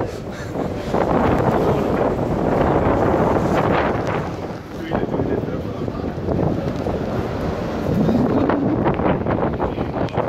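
Strong wind blowing across the microphone in gusts on an open ship's deck, with rough sea washing against the hulls.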